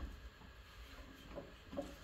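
Quiet handling noise, a few faint soft taps, as a metal tool is fitted by hand onto the castle nut of a VW Beetle's rear axle, in the centre of the brake drum.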